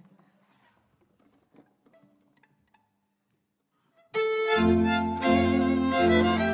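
A near-silent pause with a few faint rustles. About four seconds in, a folk string band of four violins and a double bass starts playing together: the fiddles play the tune over long low notes from the bowed bass.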